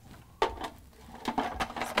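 Short plastic knocks and clicks of a food processor's feed-tube pusher and lid being fitted: one sharp click about half a second in, then a quick cluster of knocks in the second half.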